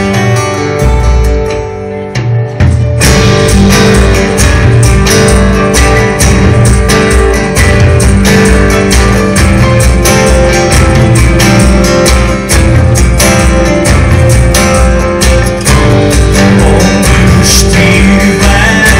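Live band playing an instrumental passage; after a sparser opening, the full band comes in with a steady beat about three seconds in.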